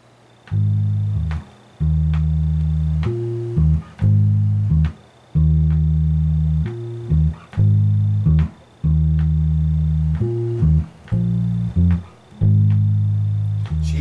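Unaccompanied electric bass guitar playing an intro line in E-flat: long sustained low notes moving between A-flat and E-flat chords, joined by short passing notes and brief gaps in a repeating pattern, starting about half a second in.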